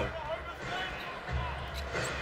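A basketball being dribbled on a hardwood court over low arena crowd noise, with a low rumble growing stronger about two-thirds of the way through.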